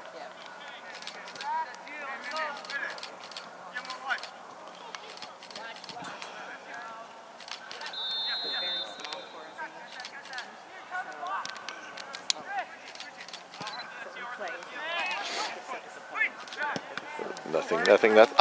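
Distant shouts and calls from players and spectators across an outdoor soccer field. Scattered sharp knocks and a brief high steady tone about eight seconds in are heard beneath them.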